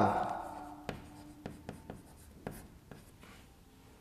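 Chalk writing on a chalkboard: a handful of short, sharp taps and scratches, spaced irregularly, as a word is written out.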